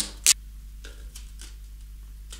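Packaging tape being handled on a balsa wing: one sharp click shortly after the start, then a few faint taps and ticks over a low steady hum.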